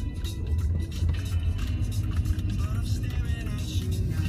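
Steady low road and engine rumble of a moving car, with a song with a singing voice playing over it.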